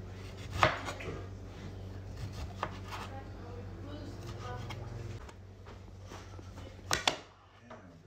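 A knife cutting the peel off an orange and knocking on a cutting board: a sharp knock about half a second in, a few lighter cuts over the next few seconds, and two quick knocks near the end.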